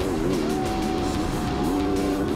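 Onboard engine sound of a Yamaha motocross bike at race speed, its pitch rising and falling with the throttle, under a music bed with a long held note.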